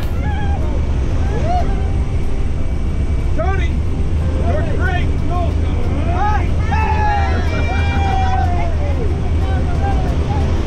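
Loud, steady rumble of a jump plane's engine and the wind in the cabin, with the door open at altitude. Indistinct voices call out in short bursts over the noise.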